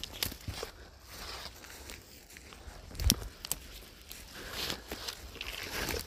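Footsteps pushing through forest undergrowth, with twigs and brush crackling and a few sharp cracks, the clearest about three seconds in.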